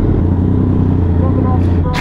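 Inline-four sport bike engine idling steadily, a loud low hum under the rider's camera.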